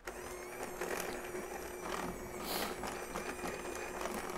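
Electric hand mixer switched on and running steadily, its beaters churning powdered sugar, softened butter and shortening for a buttercream filling.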